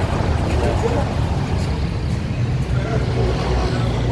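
A motor vehicle engine running steadily, a continuous low rumble, with indistinct voices in the background.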